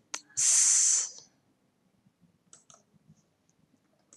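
A short breathy hiss about a second long near the start, then a few faint, scattered clicks of a computer mouse and keyboard.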